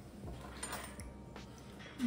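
A few faint light knocks and a brief rustle from decorating things being handled on a table.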